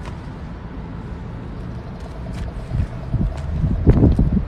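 Low, steady outdoor rumble with a few faint clicks, growing louder over the last second and ending in a sharp knock.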